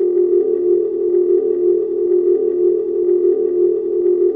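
Steady electronic drone of a logo-intro sting: one held low-mid tone with faint overtones above it, unchanging in pitch.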